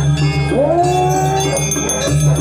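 Balinese gamelan playing with steady, ringing metallophone and gong tones. About half a second in, a long vocal cry rises in pitch, holds for about a second, then stops.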